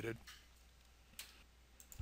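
A single sharp click about a second in, then a couple of fainter clicks near the end: the clicks of working a computer mouse or keyboard, over near silence.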